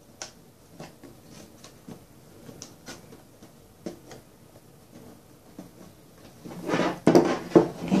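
Light scattered clicks and taps of hands working on the back of a shadow box frame lying face down on a wooden table. About seven seconds in, louder knocking and scraping as the box is handled and stood upright.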